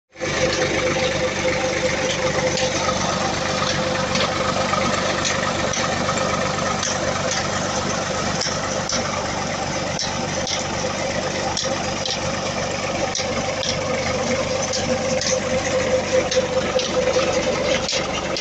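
A farm tractor's diesel engine runs at a steady speed, driving the tubewell pump through its rear PTO shaft. It makes a continuous hum with small irregular clicks over it.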